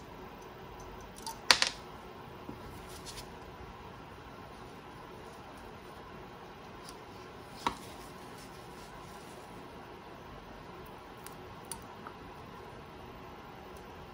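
A few small metallic clicks and taps of a screwdriver working a screw on an old radio's tuning condenser frame, the loudest a short cluster about a second and a half in and a single click near the middle, over faint steady hiss.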